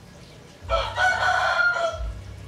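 One loud, drawn-out bird call lasting about a second, starting under a second in.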